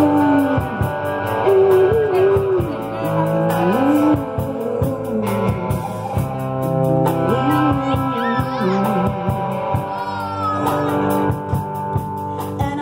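Live rock band playing through stage speakers: electric guitars, bass and drums, with a steady cymbal beat and a woman singing a gliding melody line.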